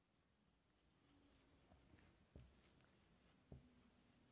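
Near silence, with only faint traces of a marker writing on a whiteboard: a light high hiss and a few soft ticks.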